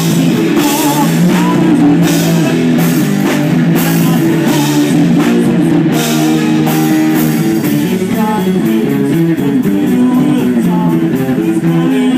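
Live fuzz-rock band playing loud: distorted electric guitar, bass guitar and drum kit, with frequent cymbal hits in the first half.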